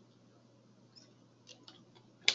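Near silence: faint room tone with a few faint clicks about a second in and again near the end.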